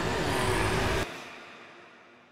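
Outro sound effect: a dense rushing noise with sliding tones that cuts off abruptly about a second in, leaving a fading tail.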